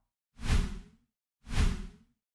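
Two whoosh sound effects, each about half a second long, about a second apart, with a heavy low end.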